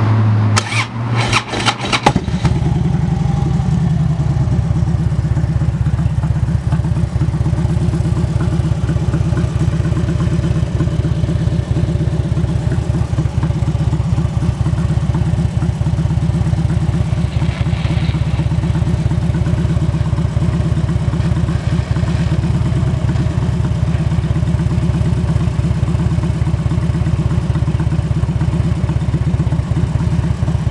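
2008 Harley-Davidson Ultra Classic's 96-cubic-inch V-twin being started: the starter cranks for about two seconds, then the engine catches, runs up briefly and settles into a steady idle. It starts right up.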